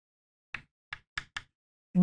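Chalk tapping and clicking against a chalkboard while writing: four short sharp taps in a little under a second.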